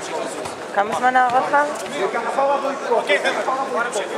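Men's voices talking, with several people chatting at once; one voice stands out clearly about a second in.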